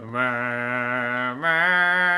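A voice singing long held notes without words, the pitch stepping up to a higher note about a second and a half in.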